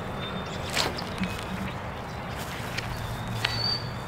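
Outdoor ambience with a steady low hum, faint thin high bird calls, and one short scuff or footstep about a second in as a disc is thrown.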